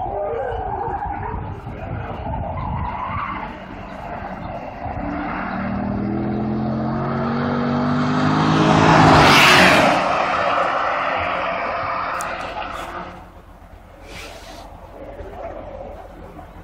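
Corvette ZR1's supercharged V8 lapping a race track. It is heard rising in pitch as the car accelerates toward and past close by, loudest about nine to ten seconds in, then fading as it moves away. A few clicks come near the end.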